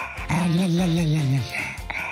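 A dog's drawn-out, wavering low grumbling call, about a second long and dropping in pitch at its end.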